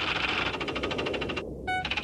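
Computer terminal text-readout sound effect: rapid, even clicking chatter as lines of text type onto the screen. The clicking breaks for a short electronic beep about three-quarters of the way in, then starts again.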